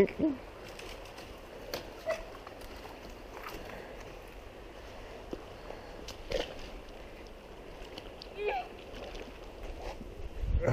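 Steady low rush of a shallow mountain creek, with a few light knocks and short, faint snatches of a distant voice.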